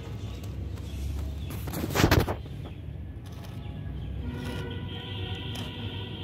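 Outdoor ambience on a phone microphone: a steady low rumble with faint music in the background. A brief loud burst of noise hits the microphone about two seconds in.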